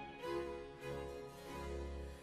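Baroque orchestra playing a short instrumental passage between sung phrases: harpsichord continuo and held string chords over three low bass notes.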